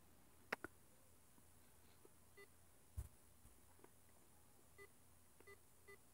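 Near silence from a handheld radio scanner searching the ham band with its squelch closed, broken by a couple of faint clicks and several short, faint beeps.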